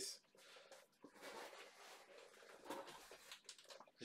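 Faint rustling of plastic packaging with a few light handling clicks, close to silence.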